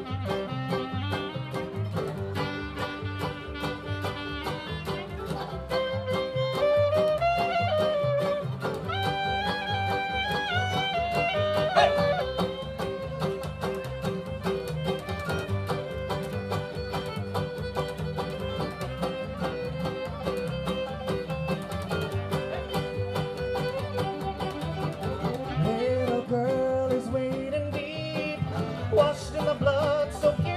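Bluegrass string band playing an instrumental break: banjo, fiddle, mandolin, acoustic guitar and upright bass, with a clarinet in the line-up. A lead line of long held and sliding notes rides over the picked and strummed strings.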